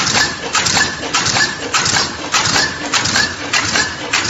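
A regular rhythmic clatter, repeating just under twice a second.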